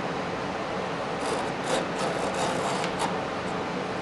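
Small hand tool scraping and paring along the edge of a curly maple board, a run of short rasping strokes from about a second in.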